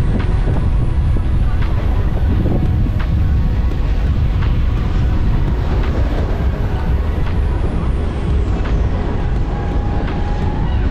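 A loud, steady low rumble, with a few faint clicks scattered through it.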